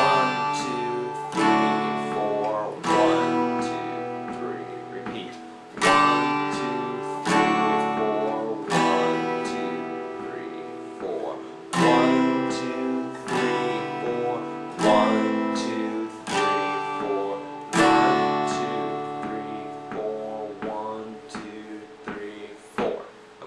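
Acoustic guitar strummed through a chord progression: G, D with F sharp in the bass and E minor, then C, E minor 7 with B in the bass, A minor, G and D. Each chord rings out after its strum. A heavy accented strum comes about every six seconds, with lighter strums between.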